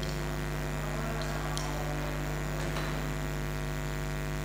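Steady electrical mains hum from the stage amplifiers and PA system while nothing is being played, with a few faint clicks.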